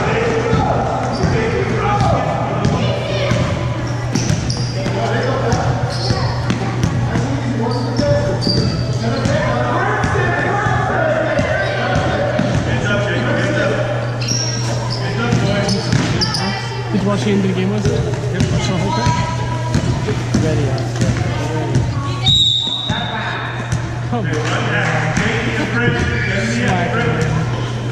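A basketball is dribbled and bounced on a hardwood gym floor during play, with many sharp bounces and short high squeaks, under spectators' talk echoing in a large gym. A steady low hum runs underneath.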